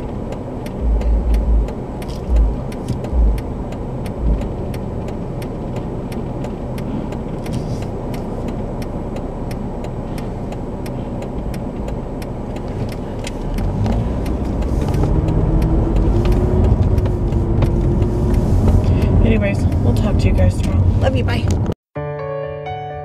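Car driving, heard from inside the cabin: steady road and engine noise with a few low thuds in the first few seconds. About two-thirds of the way in it gets louder, and the engine note rises as the car accelerates.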